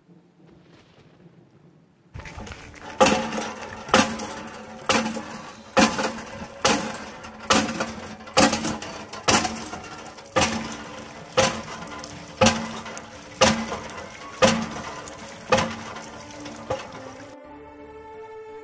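Village hand pump being worked by its iron handle: a metallic clank on each stroke, about one a second for some fifteen strokes, starting about two seconds in, with water gushing from the spout between the clanks.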